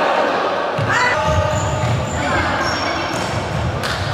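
Sound of a futsal match inside a sports hall: voices of players and spectators echoing in the hall, with play on the wooden court.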